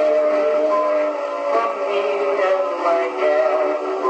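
Victrola VV 8-4 phonograph playing an old vocal record: a male singer holds a long note on "again" over the band, changing note about one and a half seconds in. The sound is thin, with no bass.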